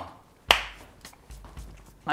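A single sharp snap or click about half a second in, dying away quickly.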